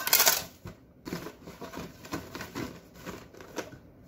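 Empty cardboard cartons being handled: a loud rustle right at the start, then a run of irregular crinkles and light knocks as they are gathered and set down.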